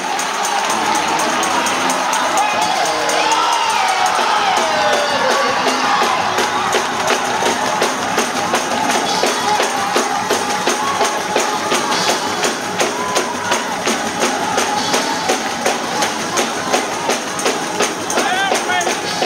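Church praise break: music driven by tambourine, with the congregation shouting and cheering over it. From about halfway through, the beat becomes sharp and even, about two to three strokes a second.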